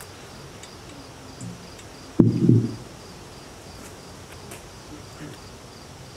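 Crickets chirping steadily in an even, repeating high pulse. About two seconds in comes a sharp click and a brief, loud burst of a person's voice.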